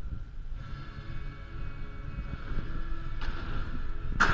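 BMX bike tyres rolling over the skatepark floor and ramps with a low rumble as the rider approaches at speed, with a brief rush of noise about three seconds in as the bike hits the ramp for a jump.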